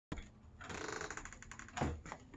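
A rapid run of light metallic clicks, about ten a second, then a thump near the end: a metal security screen door's lock and latch being worked from the inside before it opens.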